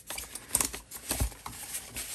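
Rustling and scraping of CPAP mask headgear straps and the plastic mask rubbing on a polystyrene foam head as they are pulled off, with a few sharp clicks, the loudest about half a second in.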